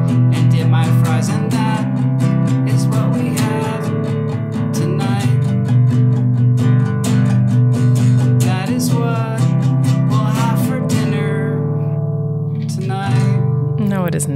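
Acoustic guitar strummed in a steady rhythm of chords. About eleven seconds in the strumming stops and a chord is left ringing, and a few strokes follow near the end.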